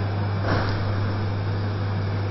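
Steady low electrical hum with a constant background hiss, the room and sound-system noise of a conference hall. A faint brief soft sound comes about half a second in.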